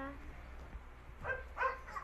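A dog whimpering in the background: a few short, high-pitched calls in the second half.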